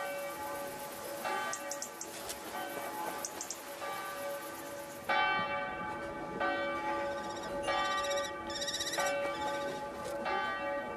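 Church bells ringing, several bells sounding together in overlapping, sustained tones that grow louder about five seconds in.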